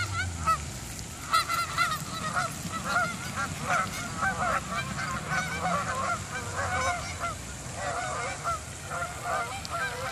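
A flock of geese honking, many short calls overlapping at two or more pitches. The calls are sparse for about the first second, then come thick and continuous.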